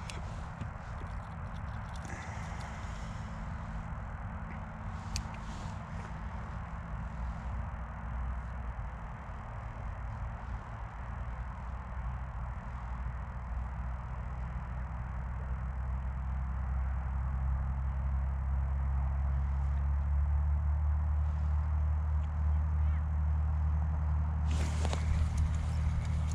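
A steady low hum with several held low tones that grows louder through the second half, with a few faint clicks of handling over it.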